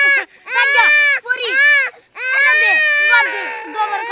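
A toddler crying in about four long, loud wails, each rising and falling in pitch. Near the end the crying turns rougher and breathier.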